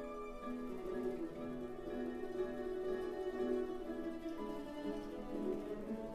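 Mandolin orchestra of mandolins, mandolas and classical guitars playing a slow meditazione passage of long held notes that change about once a second.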